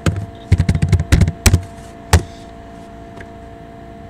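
Typing on a computer keyboard: a quick run of keystrokes over the first two seconds, the last one a little after two seconds in, over a steady hum.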